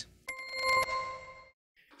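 News-bulletin transition sound effect: a bright ringing tone with a quick run of clicks over its first half second, fading out about a second and a half in.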